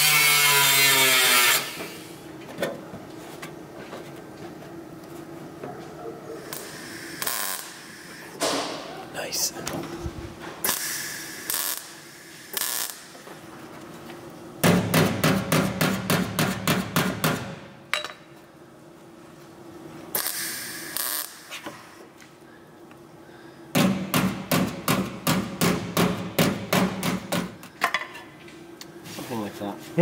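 A hammer taps the steel arch flare along its clamped edge against the car's rear quarter panel. First come scattered single knocks, then two runs of fast even taps, several a second, about 15 s in and again about 24 s in. It opens with a loud steady hiss-like noise that stops after under two seconds.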